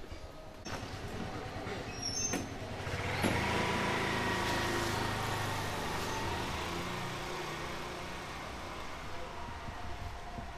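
A motor vehicle passing on the street: its engine and tyre noise swells about three seconds in and slowly fades away, after a couple of sharp clicks.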